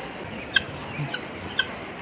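Chickens clucking: three or four short, soft clucks about half a second apart.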